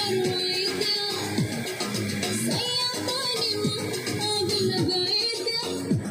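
Bhojpuri film song playing: a wavering sung melody over plucked strings, with a beat of drum notes that drop in pitch about once a second.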